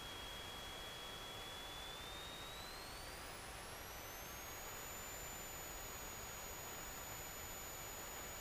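Faint steady hiss from the cockpit headset-intercom audio feed, with a thin high electrical whine that rises in pitch about two to five seconds in and then holds steady as the engine's power comes up for the takeoff roll.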